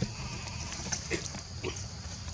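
A young macaque gives two short cries, the first a little past a second in and the second about half a second later, over a steady low background rumble.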